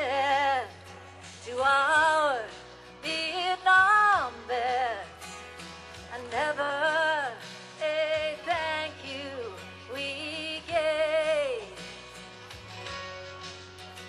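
A woman singing a slow country ballad, her voice in phrases of a second or two with a wide vibrato, over a steady low accompaniment.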